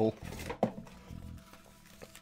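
Quiet handling of a cardboard box as a roll of toilet paper is taken out of it, with a light tap about half a second in. The tail of a laugh ends right at the start.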